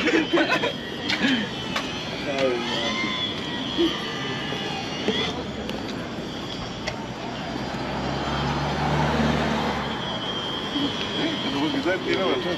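Outdoor street ambience of passersby's voices on a bridge walkway. A low engine hum from a passing vehicle swells about eight seconds in and fades out by ten seconds.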